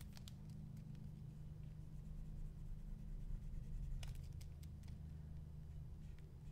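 Faint scratches and taps of a stylus on a Wacom Intuos Pro graphics tablet as sketch lines are drawn, a few right at the start and a cluster about four seconds in, over a steady low hum.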